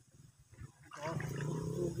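A man's low, drawn-out exclamations of "oh, oh", starting about a second in after a quiet moment.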